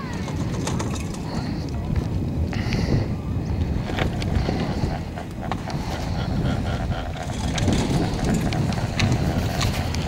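Wind buffeting the microphone on a moving chairlift, over a steady low rumble, with scattered light clicks and rattles in the second half.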